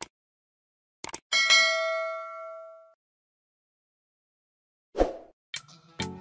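Subscribe-button sound effect: mouse clicks at the start and about a second in, then a bell ding that rings out and fades over about a second and a half, with a short swish near the end.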